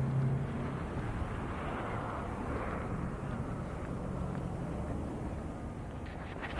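Outdoor rumble of road traffic, with a low engine hum that fades out about a second in, then a steady rushing noise.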